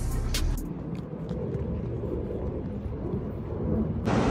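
Low, steady background rumble, with a few sharp clicks in the first half-second or so.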